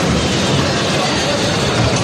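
Steady, loud noise of a combat robot arena: the drive and weapon motors of a 30 lb combat robot mixed with crowd chatter. No single hit or bang stands out.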